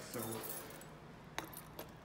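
A single sharp click about one and a half seconds in, with a couple of faint ticks after it: the elevator's up call button being pressed.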